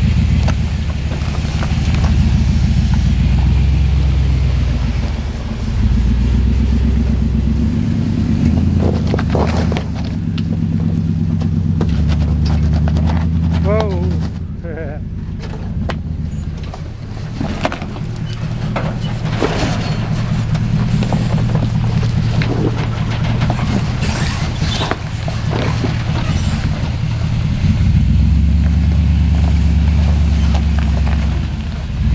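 Full-size Chevrolet pickup's engine working at crawling speed, its pitch rising and falling with the throttle as the truck climbs rock towing a loaded car trailer. Sharp knocks and scrapes of rock and metal come now and then.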